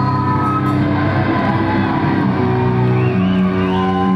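Rock band playing live with electric guitar, bass and drums, holding long sustained chords and notes, with some shouts and whoops from the crowd.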